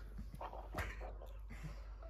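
Faint stifled laughter: short muffled breaths and small clicks from people holding back laughter.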